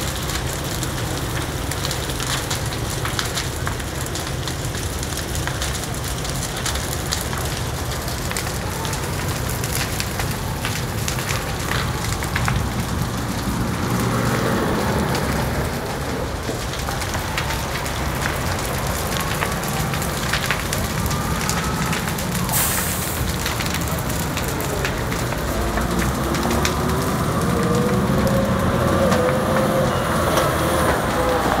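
A large fire crackling and popping as a sawmill's wooden buildings and timber burn, many sharp cracks over a steady noise. A heavy vehicle's engine passes about halfway through, and another engine runs near the end.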